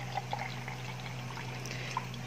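Canned coffee drink pouring from a tilted can into a drinking glass in a steady, unbroken stream.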